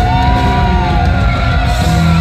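Live rock band with an electric guitar lead on a Stratocaster-style guitar, holding long sustained notes that bend up and glide down over the band's backing.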